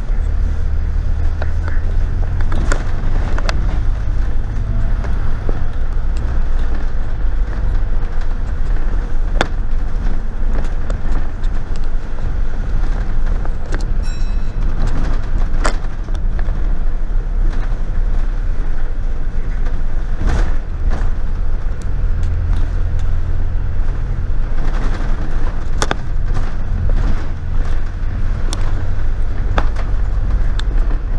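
Double-decker bus heard from its upper deck while driving: a steady low engine rumble that swells and eases with the throttle, over road noise, with frequent sharp rattles and clicks from the bus body.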